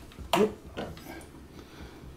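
A sharp click about a third of a second in, then a few faint ticks: the planetary gear set inside the B9 robot's radar drive turning unexpectedly as the part is worked, which may have thrown off the point it had been lined up to.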